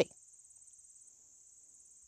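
Faint, steady, high-pitched trilling of an insect chorus, crickets or katydids, with a slight pulsing in level.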